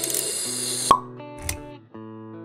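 Logo-sting intro music: held synth tones under a swelling whoosh that ends in a sharp hit with a bright ping just before a second in, then a softer low thump.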